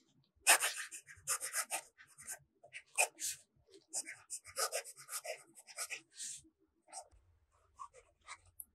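Fountain pen nib scratching across notebook paper in short, irregular strokes as cursive is written.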